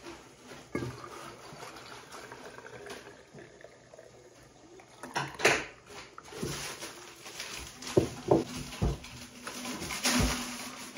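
Brewed black chai tea poured from one glass mason jar into another: a steady pour whose pitch rises as the jar fills. It is followed by sharp glass knocks and clinks about halfway through and again near the end, as the jars are handled and set on a wooden table.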